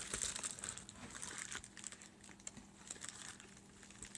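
Crinkling and crackling of a metallic pink plastic bubble mailer being handled, busier in the first second or so and then fainter.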